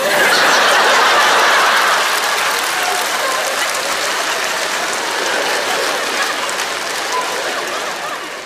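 Theatre audience laughing and applauding. It bursts in at once, is loudest in the first couple of seconds, then slowly dies down.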